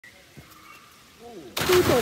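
A person jumping into a pond: a sudden loud splash of water about one and a half seconds in, with voices over it.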